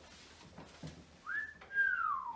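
A person whistling: a short rising note about a second in, then a longer note sliding downward in pitch near the end.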